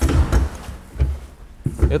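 Dull thumps and a sharp click as a car's bonnet is unlatched: the interior release lever is pulled and the hood latch pops.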